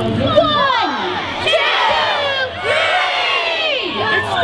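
A crowd of children shouting and cheering together, many high voices at once, swelling about a second and a half in and again near the end.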